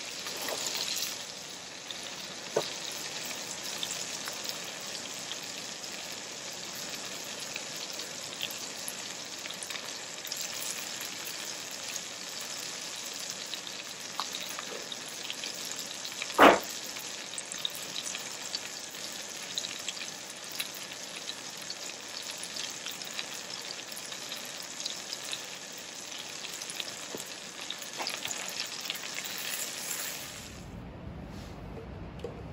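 Meat sizzling steadily as it fries in fat in a stainless steel pan on a gas stove. A single sharp knock sounds about halfway through.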